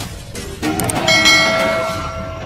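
Trailer sound design: a swelling hit about half a second in. Then, from about a second in, a bright bell-like metallic ringing of several held tones that slowly fades.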